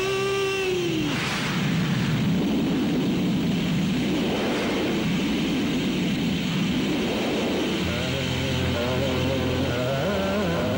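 A sung note that bends and ends in the first second gives way to the steady rush of heavy rain on the film soundtrack, with a noisy burst just after the note ends. Instrumental music with held tones comes back in about eight seconds in.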